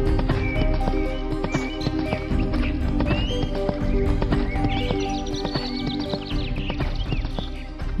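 Background music with cartoon sound effects of a horse's hooves galloping, a quick run of clip-clop beats.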